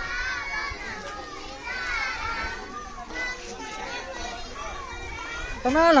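Many overlapping voices of a walking group, children's voices among them, chattering and calling out, with no single voice standing out.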